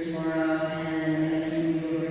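A woman's voice sounding at one nearly unchanging pitch, drawn out and chant-like rather than ordinary speech, with a short hissing 's'-like sound about one and a half seconds in.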